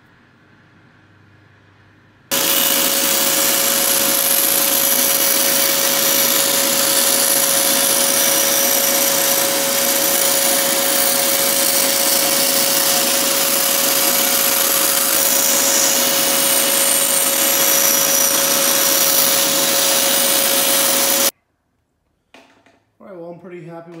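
Benchtop bandsaw running and cutting a 1/8-inch plywood gusset: a loud, steady whirr with a constant whine, starting and stopping abruptly.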